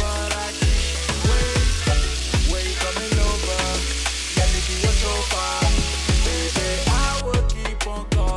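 Chicken frying in a pan, a steady sizzle that stops near the end, under background music with a deep, steady beat.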